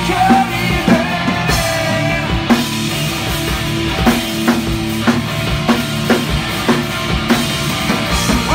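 A live hard rock band playing: electric guitars and bass held over a drum kit keeping a steady beat of about two hits a second.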